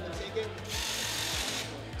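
An FRC robot's motor-driven intake rollers run for about a second, drawing a foam ring note in, then stop automatically once the note reaches its set position in the robot.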